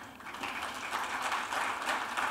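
Audience applauding, a steady patter of clapping at moderate loudness.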